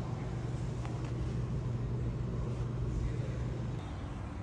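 Steady low hum of a vehicle engine running, over general street traffic noise; the hum drops away shortly before the end.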